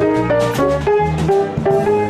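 Upright piano played in a swing jazz style. A low bass line steps along under mid-range chords and melody notes in a steady rhythm.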